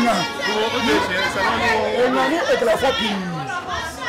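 A man speaking loudly and forcefully, with other voices chattering around him.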